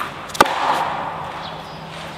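Tennis ball struck hard with a racket: two sharp cracks about half a second apart, the second louder, ringing briefly in the indoor court hall.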